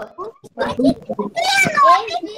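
Young children's voices over a video call, several talking at once without clear words, with a loud high-pitched drawn-out cry near the end.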